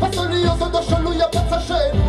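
Live reggae music over a club sound system: a heavy bass line and drums, with a singer's voice carried over it through the microphone.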